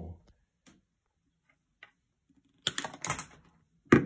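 Cutters snipping through the thin flat cable of a low-voltage LED door sensor switch. A couple of sharp clicks come about two-thirds through, then a louder click near the end.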